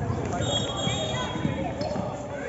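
A basketball bouncing on the court, with voices of players and spectators over it.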